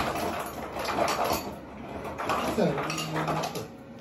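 Dishes and cutlery clinking and clattering on a table for the first second and a half, followed by a brief voice sound about three seconds in.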